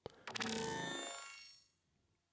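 A one-shot sound sample played back: a short click, then a bright, bell-like ringing tone with many overtones that fades away over about a second and a half.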